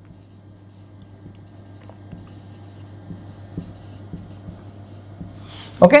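Marker pen writing on a whiteboard: faint scratches and squeaks of the letter strokes over a low steady hum.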